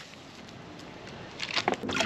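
Soft, even hiss of fine gold concentrate sliding out of a sample bag into a plastic gold pan, then water sloshing and splashing as the pan is dipped into the tub near the end.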